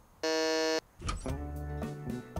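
Electric doorbell buzzer pressed once: a steady, harsh buzz of about half a second that cuts off sharply. Background music comes in about a second later.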